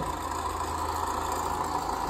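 Volkswagen Golf R's turbocharged four-cylinder engine idling steadily, heard as played back through a laptop speaker.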